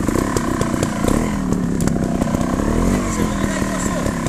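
Trials motorcycle engine running steadily with a fast, even firing rumble, its pitch rising and falling a little in the middle.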